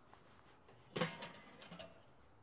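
A short knock and clatter about a second in, fading over about half a second, as wood chunks are dropped onto the hot charcoal in a charcoal grill.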